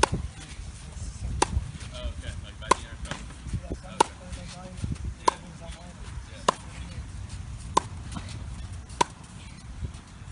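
Tennis racket hitting the ball in a fed forehand drill: eight sharp, evenly spaced hits about one and a quarter seconds apart, with fainter knocks in between.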